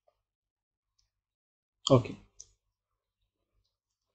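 Near silence, broken by a spoken "okay" about two seconds in and a single short, faint click right after it.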